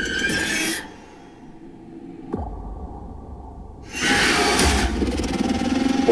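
Horror movie trailer sound design: a low, dark drone, a sudden hit a little past two seconds in followed by a deep rumble, then a loud rushing surge from about four seconds in.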